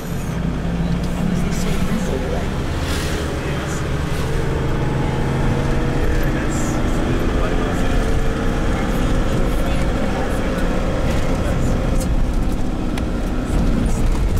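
Minibus engine running and road noise as heard from inside the cabin while driving, a steady low drone.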